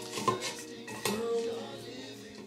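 Dry pampas grass stems knocking and scraping against the rim of a gold vase as they are pushed into it, a few light clinks: a pair just after the start and another about a second in.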